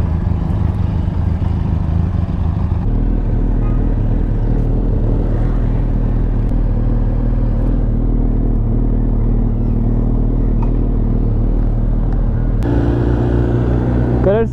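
Suzuki Hayabusa's inline-four engine running at low, steady revs as the bike is ridden off at city pace. Its note changes pitch once about three seconds in and again near the end.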